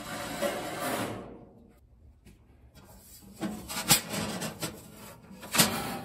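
Expanded-metal steel cooking grates sliding on the smoker's rails: a metal-on-metal scrape in the first second, then, after a short lull, more scraping with two sharp clanks.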